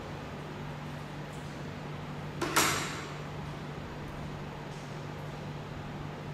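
A single sharp clink, with a short ringing tail about halfway through, as metal tweezers knock against a small glass Erlenmeyer flask. A steady low room hum runs underneath.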